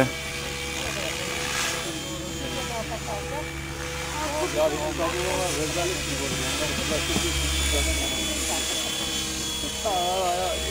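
GAUI X7 radio-controlled model helicopter flying overhead, its motor and rotor giving a steady whine. Voices can be heard in the background.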